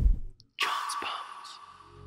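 An airy, breathy sound effect for the title card. It starts suddenly just after a brief dead silence, carries a faint steady tone and fades away over about a second and a half.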